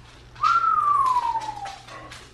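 A single long whistled note that jumps up about half a second in, then slides slowly and steadily down in pitch for over a second.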